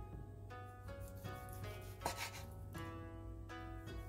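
Background music playing a slow melody of held notes, with a large knife slicing through a teriyaki-glazed duck breast onto a wooden cutting board a few times.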